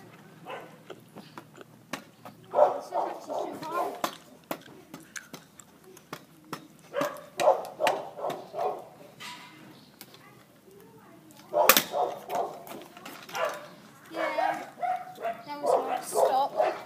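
A dog barking in four bouts of short, loud barks, with sharp clicks and knocks of a stunt scooter's wheels and deck on tarmac in between.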